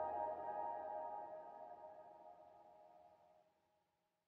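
Ambient background music with long sustained tones, fading out to silence about three and a half seconds in.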